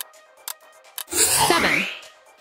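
Quiz countdown timer ticking about twice a second, then about a second in a loud buzzer sound effect, a noisy blast with sweeping tones lasting under a second, signalling that time is up.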